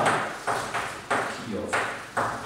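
Chalk writing on a blackboard: a run of short strokes, each starting with a sharp tap and fading, about every half second.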